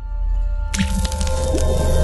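Background rock music fading out, then about three-quarters of a second in a logo sting starts suddenly: a splat sound effect over a held musical chord.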